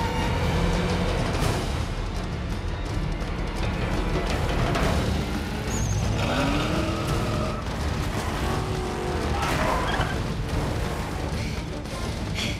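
Action-film soundtrack: vehicle engines running at speed with road and tyre noise, mixed under a music score. About six seconds in, an engine's pitch rises.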